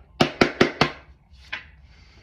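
A hand-held deck of oracle cards being shuffled, with four quick, sharp card slaps about a fifth of a second apart, then a fainter one about a second later.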